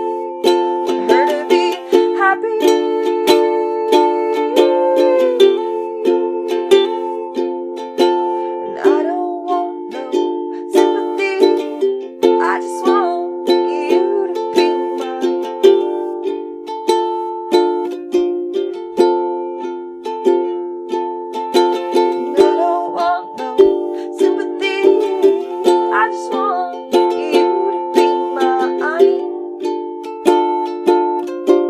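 Ukulele strummed in a steady, even rhythm of chords, an instrumental passage of a homemade folk punk song with a small-room sound.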